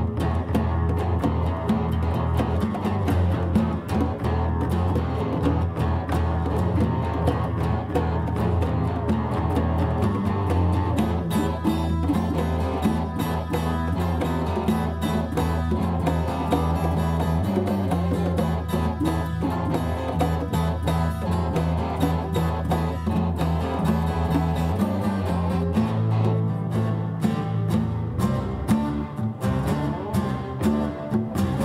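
Live band playing an instrumental passage: strummed acoustic guitar with electric guitars and congas, over a sustained bass line that changes note about 26 seconds in.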